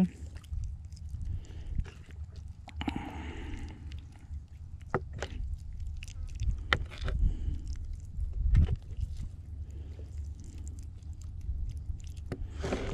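Hands rubbing yellow mustard into raw rabbit meat: a few short wet squelches and clicks. Under them a steady low rumble of wind on the microphone.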